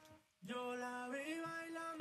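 Playback of a reggaeton lead vocal through the Waves Vitamin harmonic exciter, which brightens the highs. A sung held note starts about half a second in and steps up in pitch about a second in.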